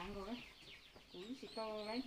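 A rooster clucking, with a woman talking over it.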